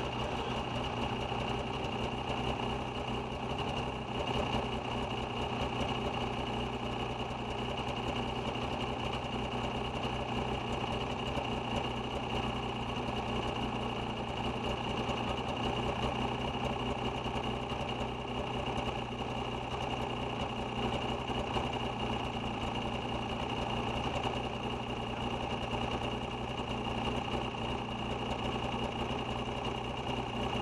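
Snowmobile engine running steadily, close to the microphone.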